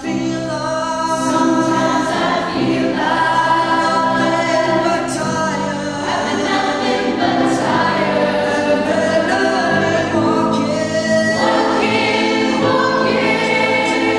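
A mixed choir of women's and men's voices singing in harmony, in long held notes; about eleven seconds in, the voices move up together to a higher chord.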